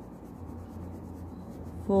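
Green wax crayon rubbing back and forth on paper, filling in a square on a worksheet with a soft, scratchy sound.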